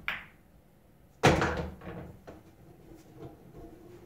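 A cue tip strikes the cue ball with a light click, then about a second later comes a much louder wooden thunk and rumble as a ball drops into a pocket and rolls down the pool table's ball-return channel, followed by a few lighter knocks.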